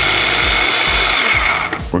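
Small electric food processor (mini chopper) running on high, pureeing peas and tarragon with a little stock. About a second and a half in it is switched off and its whine falls as the motor winds down.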